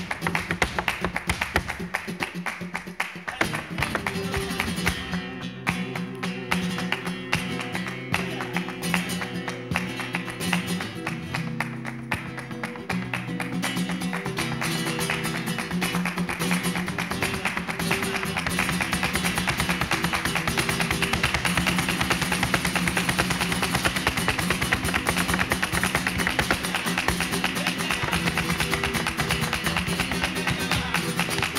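Flamenco guitar playing under the rapid striking of a dancer's heeled flamenco shoes on the stage (zapateado footwork). The footwork starts almost alone, the guitar comes in a few seconds later, and from the middle on the strikes get faster and louder.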